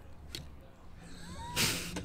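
A man's short snort of laughter through the nose near the end, a brief burst of breath noise, with a faint short chirp just before it.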